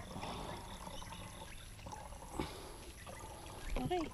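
Water poured from a large plastic jug into a small plastic bottle: a faint, steady trickle.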